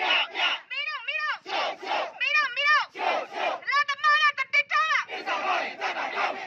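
Protest crowd chanting slogans in call and response: one high voice shouts a short line, and the crowd shouts back together, back and forth about once a second.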